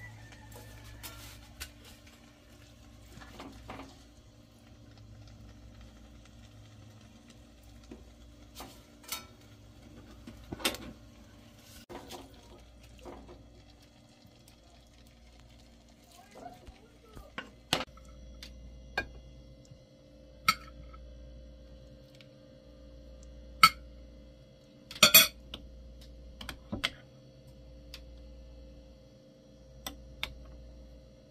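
Scattered clinks and knocks of a serving spoon, pot and plates as shredded meat is dished onto tortillas, with a couple of louder knocks a little over three-quarters of the way through, over a steady low hum.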